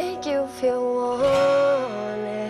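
A country song sung to acoustic guitar, the voices holding long notes that step smoothly from pitch to pitch.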